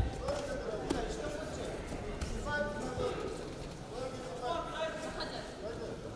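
Voices of spectators and coaches calling out across a large sports hall, with a few short sharp knocks.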